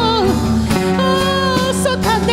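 Live worship band: a woman singing with vibrato, holding one long note through the middle, over acoustic guitar and the band.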